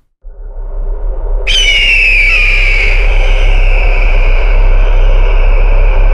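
Logo sound effect: a low rumble starts after a brief silence, and about a second and a half in a high whistling tone joins it, slides down a little and then holds.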